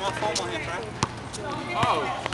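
A basketball bouncing on an outdoor asphalt court: a few sharp, separate bounces about three-quarters of a second apart, with voices in the background.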